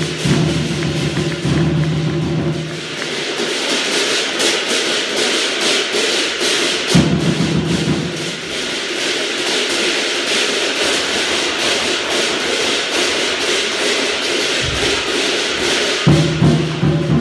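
Chinese lion dance percussion: a large drum beaten with cymbals clashing rapidly and continuously. The deep drum strokes are heavier at the start and again from about halfway through.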